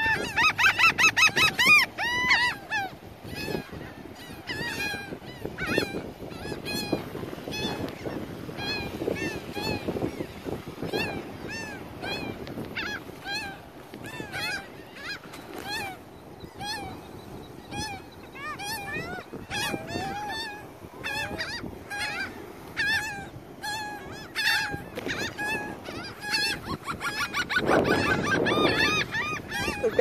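A flock of laughing gulls calling: many short, rising-then-falling calls overlapping, crowded together in the first couple of seconds and again near the end, with scattered single calls in between.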